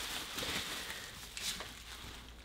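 Plastic bubble wrap rustling and crinkling quietly as it is unfolded by hand.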